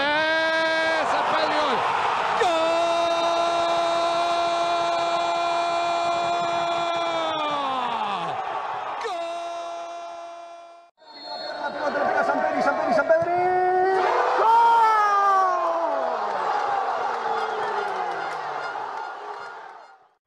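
A football commentator's drawn-out goal cry, one long shout held steady for several seconds and then falling away, over crowd noise. After a brief cut, a second goal cry swoops up and slides slowly down over the crowd.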